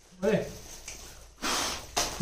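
A person's brief voiced sound about a quarter second in, then a half-second breathy gasp about a second later.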